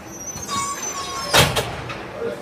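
A sharp bang about one and a half seconds in, followed at once by a lighter knock.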